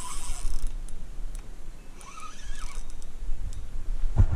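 Fishing reel whirring in two short bursts under the strain of a large pike on the line, over a low rumble.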